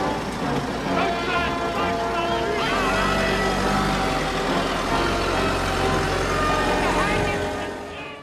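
Several voices talking over one another, too jumbled to make out. A steady low rumble comes in about three seconds in and carries on under them.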